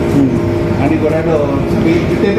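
People talking in Tagalog at close range over a steady low background hum.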